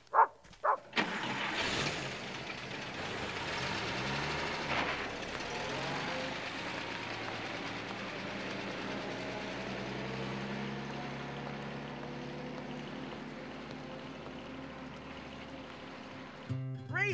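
An old car's engine starts about a second in and the car pulls away, its engine note rising as it speeds up, then running steadily and slowly fading with distance. Two short, loud high tones sound just before the engine starts.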